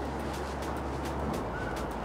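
Steady downtown street noise of passing traffic, with a brief faint high chirp about three-quarters of the way through.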